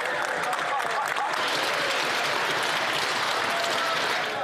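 A chamber full of members of Parliament applauding steadily, with some voices mixed in.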